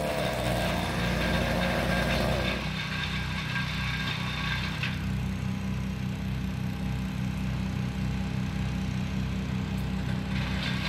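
Chainsaw engine settling down after a cut about two and a half seconds in, then idling steadily.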